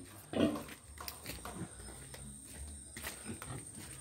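A pig grunting quietly, with one short, louder grunt about a third of a second in and a few faint low grunts around the middle.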